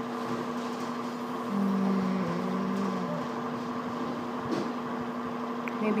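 Steady electrical hum with two held tones. About a second and a half in, a person hums a low, slightly falling 'hmm' for over a second.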